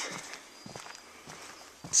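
Footsteps on a wooden plank boardwalk at a walking pace, a few soft steps about every half second.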